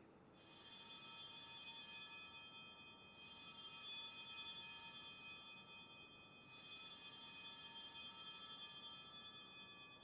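Altar bells rung three times, a few seconds apart. Each ring is a cluster of high tones that rings on and slowly fades. It is the bell signal marking the elevation of the chalice at the consecration.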